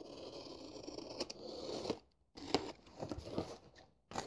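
Packing tape along the seam of a cardboard parcel box being slit open, a continuous scratchy rasp for about two seconds. After a brief pause come shorter scrapes and crackles as the cardboard flaps are pulled apart.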